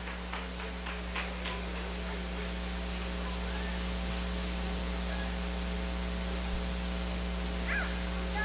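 Steady electrical mains hum from the sound system, with a few faint clicks in the first second or so and faint high voices near the end.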